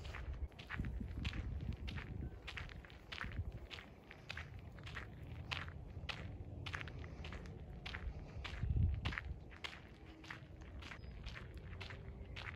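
Footsteps crunching on a fine crushed-gravel trail at a steady walking pace, about two steps a second, with a low rumble underneath that swells briefly about nine seconds in.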